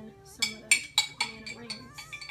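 A spoon knocking and clinking against a glass jar as food is scooped out: a run of sharp clinks from about half a second in, each with a brief ring.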